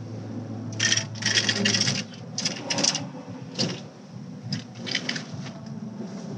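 Rustling and rattling of small things being handled and searched through, in a string of short bursts. A low steady hum runs underneath and stops about two seconds in.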